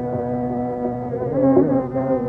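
Carnatic music in raga Varali: a long held note over a steady buzzing drone, with a short pitch ornament about three quarters of the way through. Narrow, old-recording sound with no high treble.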